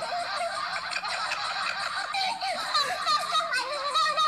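Laughter pitched up high by a voice effect, squeaky and warbling, with a honking, fowl-like quality.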